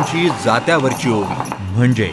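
A voice over background music, with light metallic jingling.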